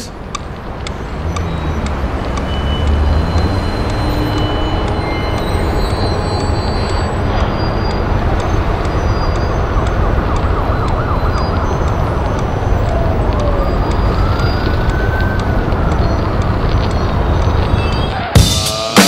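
Soundtrack of a promotional video's dark opening played over a hall's PA: a dense, steady low rumble with wailing tones that rise and fall, one arcing up and back down near the end.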